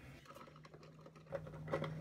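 Faint, scattered light clicks and taps of small plastic makeup items being handled and picked up, with a faint steady hum underneath.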